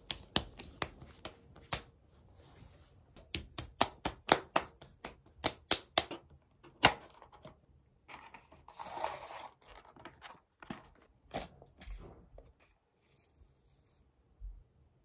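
Lotion-slick hands rubbing and patting on skin, a quick run of sharp wet smacks and clicks for the first several seconds. About eight seconds in comes a rustling scrape as a sachet is slid out of a paper box, then a few light taps and crinkles of the packet.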